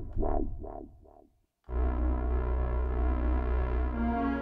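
Akai JURA software synthesizer: short, quickly repeated notes on the resonant 'Fat Res' preset fade out about a second and a half in. After a brief gap, a sustained chord with a heavy bass starts on the 'Full Stack' preset.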